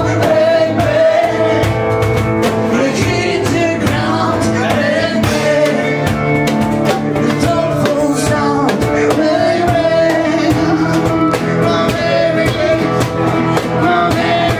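A live band playing a song: a woman singing lead over strummed acoustic guitar, electric guitar and percussion with cymbal strokes.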